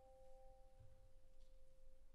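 Vibraphone notes left ringing after being struck, two faint sustained tones; the higher one dies away a little past a second in while the lower one holds on.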